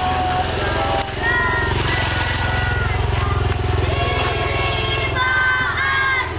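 A motorcycle engine running steadily, with children's voices singing long held notes over it.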